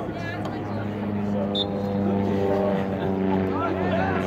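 Steady hum of a motor vehicle's engine, growing a little louder about a second in, with people's voices over it near the end.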